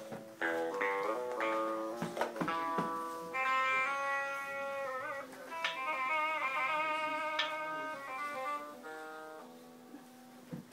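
Toy guitar played as a melody of held electronic-sounding notes, changing every half second or so, a few of them wavering in pitch midway, with sharp clicks in the first couple of seconds; the playing dies down near the end.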